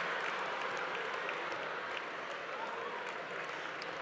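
An audience applauding steadily, fairly quiet. The clapping blends into an even patter.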